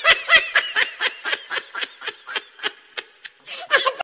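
Laughter in quick, repeated bursts, about four a second at first and slowing, with a louder burst near the end.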